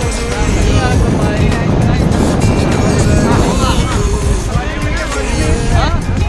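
Steady, loud rush of whitewater rapids and wind on the microphone as the raft runs the river, with music and voices over it.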